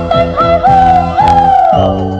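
A woman singing a long held high note that slides down near the end, over a band accompaniment with a steady beat.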